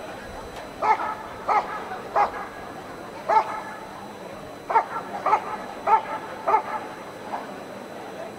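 German Shepherd dog barking at the protection helper, about nine short loud barks in two runs with a pause between them. This is the dog guarding the helper after releasing the sleeve.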